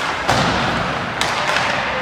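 Hockey pucks and sticks knocking during a rink warm-up: a loud thud with an echo about a third of a second in, then two sharper knocks about a second and a half in. A steady hiss of rink noise runs underneath.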